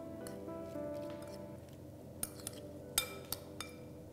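Metal spoon clinking against a glass bowl while stirring prawns into a spice paste: a few sharp clinks in the second half, over soft background music.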